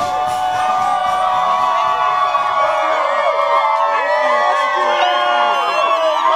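A crowd cheering and whooping, many voices overlapping.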